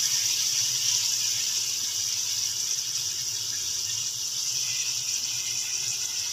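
Steady, even hiss of bitter gourd and chicken cooking in a pot on a low flame on the stove, with a faint low hum beneath.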